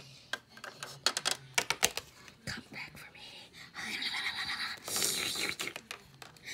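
Light clicks and taps of small plastic toy figures and a plastic fence being handled and moved, followed by about two seconds of breathy whispering.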